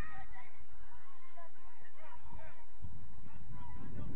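Many short, repeated distant calls over a steady low rumble of wind on the microphone.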